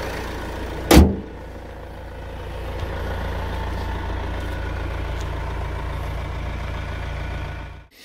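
Renault Espace 5's 1.6 dCi twin-turbo diesel idling steadily and softly, a quiet 'whisper' rather than a diesel clatter. About a second in, the bonnet is dropped shut with one loud thud.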